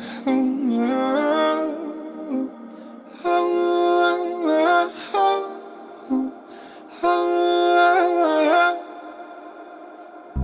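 Saxophone playing three slow melodic phrases, each about two seconds long, with short pauses between them and the notes bending in pitch at the ends of phrases.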